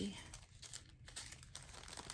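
Small plastic bags of resin diamond-painting drills crinkling faintly as they are picked through by hand.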